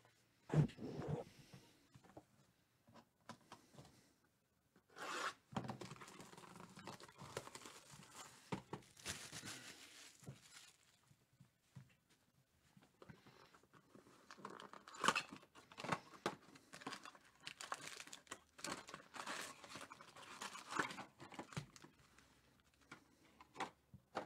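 Plastic shrink wrap being torn and crinkled off a sealed trading-card hobby box, with cardboard and foil packs being handled as the box is opened. The sound comes as irregular bursts of rustling and crackling with small clicks, after a single knock about half a second in.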